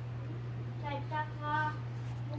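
A single short vocal sound, lasting about a second, from a high-pitched voice, heard over a steady low hum.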